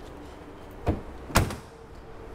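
Hood of a Toyota Supra being shut: a dull thud a little under a second in, then a louder, sharper slam about half a second later.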